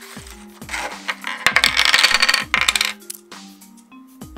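Stiff plastic blister packaging crackling and clicking as a toy pack is handled and opened, loudest for about a second in the middle. Background music with a repeating electronic beat plays underneath.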